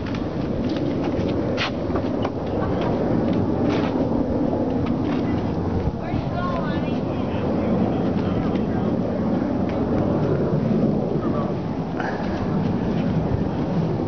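Steady low rumble of outdoor background noise with indistinct voices mixed in.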